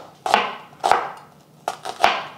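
Chef's knife slicing an onion on a wooden cutting board: three strokes, each ending in a knock of the blade on the board.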